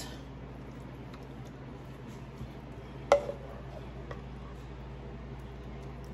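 Faint wet scraping of a wooden spoon moving ground-beef sloppy joe mixture from a skillet onto metal trays, with one short knock about three seconds in and a lighter tick a second later, over a low steady room hum.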